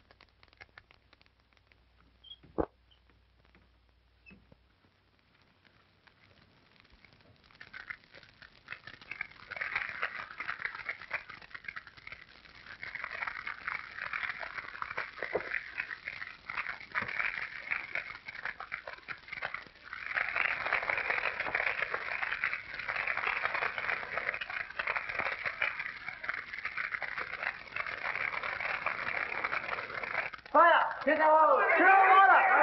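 Near silence with one sharp click early on, then burning hay crackling, building from about a quarter of the way in into a dense, steady crackle that is loudest in the last third as the fire spreads.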